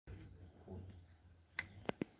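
Two sharp clicks about a third of a second apart near the end, over faint hall room tone.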